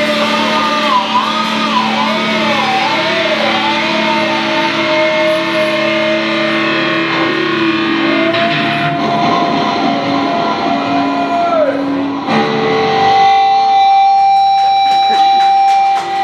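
Live hard rock band with an electric guitar lead playing wavering bends and vibrato, then one long held note that slides down. From about three-quarters of the way through, the band holds one sustained chord, the end of the song.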